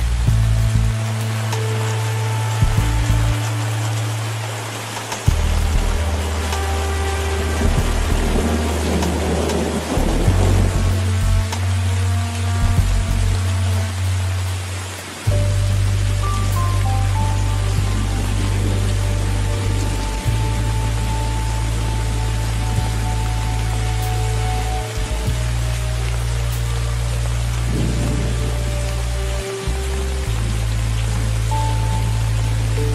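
Steady rain hiss under slow ambient relaxation music of long held bass notes that change every few seconds, with a few sustained higher notes. A rumble of thunder swells about a third of the way through.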